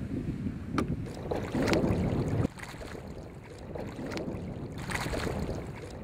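Wind noise on the microphone over water lapping and splashing, with a few short splashes. The sound drops abruptly to a quieter stretch about two and a half seconds in.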